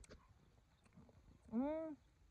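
A woman's drawn-out, arching 'mmm' of relish while tasting a freshly bitten strawberry, heard about a second and a half in, with a few faint clicks before it.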